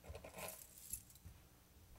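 Faint handling noise at a lectern as books and papers are picked up: a short rustle in the first half second, then a sharp click about a second in, with a few soft low thumps.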